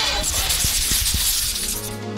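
Whoosh transition sound effect: a rushing hiss that starts suddenly and fades away over about two seconds, over background music.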